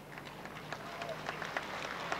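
Scattered, thin applause from an outdoor crowd, building slightly.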